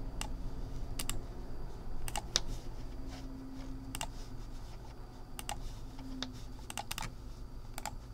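Scattered clicks of a computer keyboard and mouse, single or in quick pairs about once a second, as a list is selected, copied and pasted.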